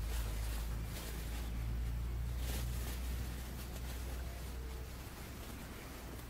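Rustling of a jacket and plastic bag as a man crouches and works close to the microphone, a few louder rustles standing out over a steady low rumble.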